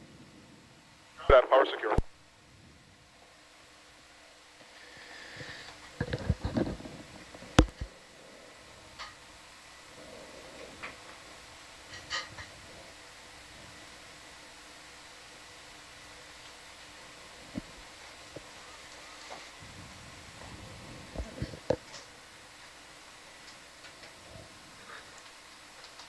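A brief voice about a second in, then a low steady hum broken by scattered sharp clicks and knocks.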